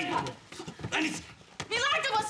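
A woman's short strained cries and grunts as she struggles against being held back, three brief outbursts with gaps between.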